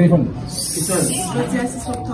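Low murmur of several voices, with a steady high hiss setting in about half a second in.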